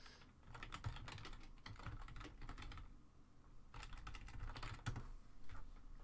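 Typing on a computer keyboard: two quick runs of light key clicks, with a short pause about three seconds in.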